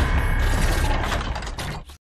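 Dense mechanical sound effect of whirring and rapid clicking, like gears ratcheting, that cuts off abruptly near the end.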